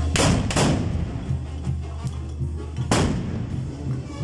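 Carnival dancers' black-powder muskets going off: two loud shots in quick succession near the start and a third about three seconds in, each with a short echoing tail, over music.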